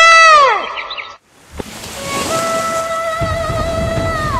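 A woman's long, loud call trails off with a falling pitch about half a second in. After a brief gap, music starts with a rushing swell, then a held note, and a drum beat comes in about three seconds in.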